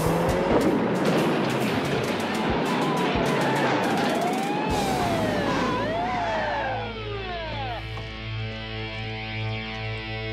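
Police car siren wailing up and down over dramatic chase music, with car noise and a run of sharp clattering knocks. About seven seconds in, the siren winds down and the music settles into a held chord.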